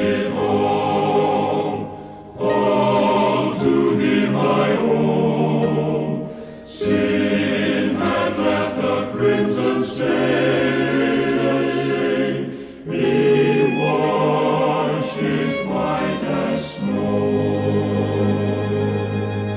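Choir singing a hymn-like piece in phrases of a few seconds, with short breaks between phrases; near the end it settles into a held chord.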